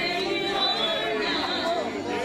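Several people praying aloud at the same time, their voices overlapping into a steady babble of speech.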